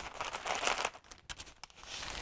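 Plastic gallon zip-top bag crinkling as it is lifted and tilted, with the dry mix of ground coffee and spices shifting inside. The crackling is busiest in the first second, then thins to a few scattered crackles.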